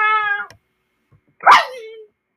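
A voice holds a sung note that stops about half a second in. After a pause, a sudden loud cry falls sharply in pitch and trails off.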